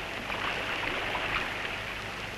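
Steady hiss with a faint low hum between narrator lines: the surface noise of a 1930s newsreel soundtrack.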